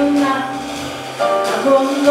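Live jazz: a female vocalist singing a held note, then starting a new phrase about a second in, accompanied by piano and double bass.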